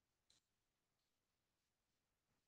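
Near silence: faint room tone, with one very faint click about a third of a second in.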